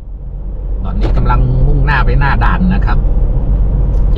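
Steady low rumble of a car driving on a paved road, heard from inside the cabin, fading in over the first second, with a person talking over it.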